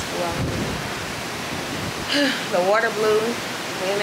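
Steady rushing noise of wind and sea on an open ship's balcony, with a woman's voice speaking briefly over it twice.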